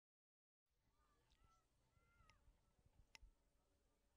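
Near silence: the sound cuts out completely for the first half second, then only faint outdoor background remains, with a few faint short calls and a faint tap about three seconds in.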